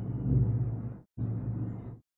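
Muffled anime film soundtrack audio with a steady low hum, cut into chunks by abrupt dead-silent gaps: it drops out briefly about a second in and cuts off again at the end.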